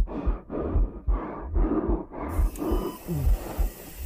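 Heavy, labored breathing and grunts in quick, irregular bursts, each with a dull low thump, about two a second.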